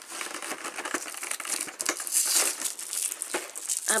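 Crinkling of packaging as a chocolate truffle is taken out of a Lindor advent calendar and its wrapper handled: a dense run of small crackles, loudest about two seconds in.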